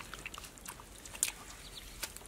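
Wet mud squelching with small scattered clicks as hands and a digging stick work through mud in a shallow hole, with one sharper click just past a second in.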